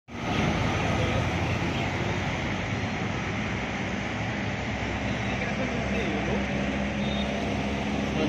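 Steady city road traffic: a dense mix of engine and tyre noise, with a bus passing close by at the start.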